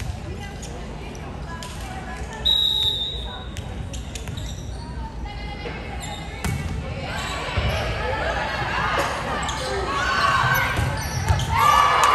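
Indoor volleyball in a large gym. A referee's whistle blows once, about a second long, about two and a half seconds in. Later comes the serve and rally, with thuds of the ball and voices shouting that grow louder toward the end.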